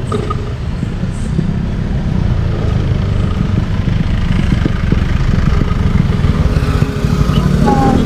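Motorcycle engine running steadily at low revs, a continuous low rumble.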